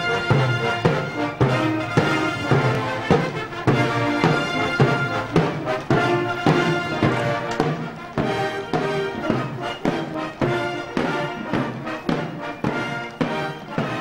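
Massed mounted military bands playing a cavalry march on brass and kettledrums, with a steady marching beat.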